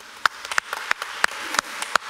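Congregation clapping in congratulation, with one set of distinct claps about three a second over scattered fainter clapping.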